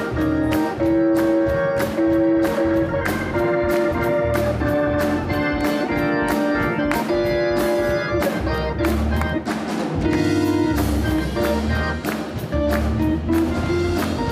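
Live instrumental church music with a steady beat and strong bass, with hands clapping along in time.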